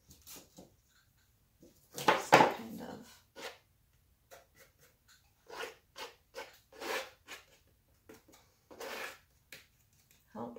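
A woman's quiet, indistinct muttering in short snatches, loudest about two seconds in.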